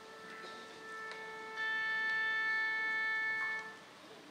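An orchestra sounding a single steady tuning note, held for about three and a half seconds. It grows fuller and louder about a second and a half in, and stops cleanly just before the end.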